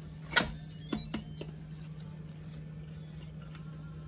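Instant Pot electric pressure cooker being closed and set: a sharp click of the lid locking, then two lighter clicks and a few faint short beeps, over a steady low hum.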